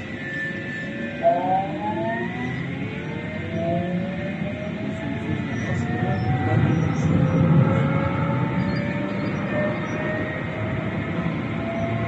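Electric tram heard from inside, pulling away: its traction motors whine in several tones that climb slowly and steadily in pitch as it gathers speed, over a low rumble of wheels on the rails.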